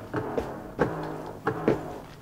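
A sampled music loop played back through studio monitors: a few sparse percussive hits over a low sustained note.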